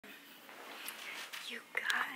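A woman's soft, whispered voice, quiet at first and louder near the end.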